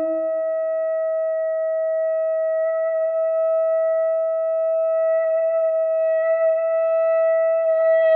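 Saxophone quartet holding one long, steady, almost pure-sounding note, while a lower note dies away in the first second. Near the end other parts come in with quick, fluttering notes over the held tone.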